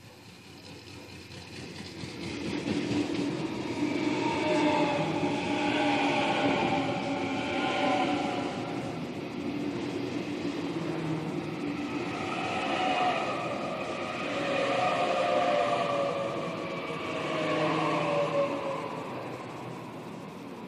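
Waratah double-deck electric train pulling into the platform and slowing, with a rising rumble as it comes alongside. Its electric drive whines in several falling tones as it brakes.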